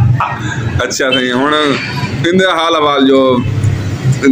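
A man's voice in long, drawn-out stretches that rise and fall in pitch, half-spoken, half-sung.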